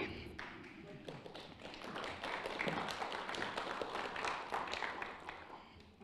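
Audience applauding a speaker's welcome, swelling over the first couple of seconds, then dying away near the end.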